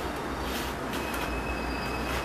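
Steady low hum and hiss, with a faint high-pitched whine coming in about a second in.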